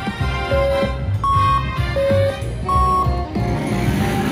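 IGT Wheel of Fortune slot machine playing its bonus music: a rhythmic beat with four held electronic tones, alternating low and high, each about half a second long.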